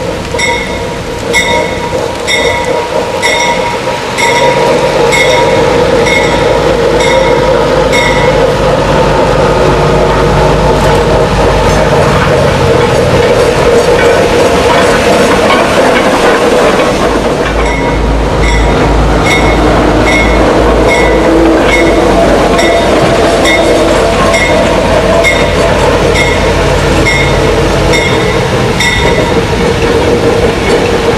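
GE 44-ton diesel switcher locomotive running close by as it moves past, its diesel engine sound loud with a deep throb about halfway through. A grade-crossing bell strikes steadily about one and a half times a second. It is lost under the engine from about eight seconds in and is heard again after about eighteen.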